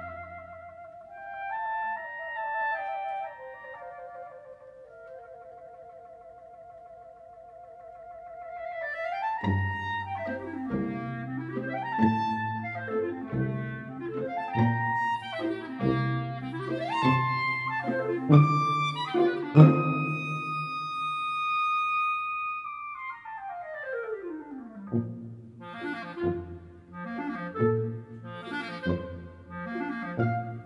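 Two clarinets playing a lively variation with orchestral accompaniment. Soft, wavering clarinet lines come first. About nine seconds in, a low accompaniment enters under quick clarinet runs. Past the middle, a high held note gives way to a long downward run.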